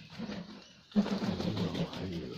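Pigeons calling: a short low coo just after the start, then a louder, longer pulsing low coo about a second in.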